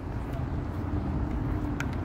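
Steady low outdoor background rumble, with a faint steady hum through most of it and a light click near the end.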